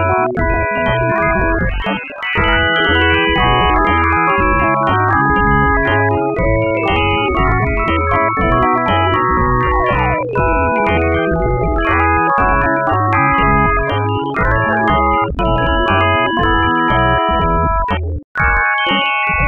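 A song's audio converted to MIDI and played back as thousands of stacked keyboard notes, giving a dense, organ-like chord texture in which the original singing voice seems faintly audible as an auditory illusion. About ten seconds in, a run of notes glides downward in pitch.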